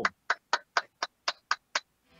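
Eight sharp, evenly spaced clicks, about four a second: a count-in leading into the outro song.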